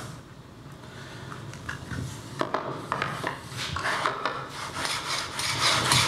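Axminster Rider No. 62 low-angle jack plane being handled: scattered light metal clicks and knocks as its adjustable mouth is closed up and the plane is set down. In the last couple of seconds comes the rasping of the blade starting to cut wood on the shooting board.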